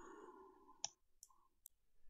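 Near silence: quiet room tone with three short, faint clicks about half a second apart.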